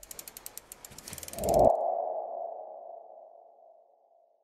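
Logo animation sound effect: a rapid run of mechanical ticks, like a ratchet, speeding up for about a second and a half, then a single mid-pitched ringing tone that starts loud and fades out over about two seconds.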